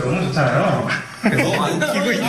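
Young men's voices talking, their pitch sliding up and down, with a short dip in loudness about a second in.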